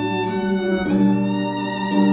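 Chamber jazz quartet of trombone, viola, alto saxophone and harp playing sustained chords, the bowed viola prominent; the chord shifts about a second in.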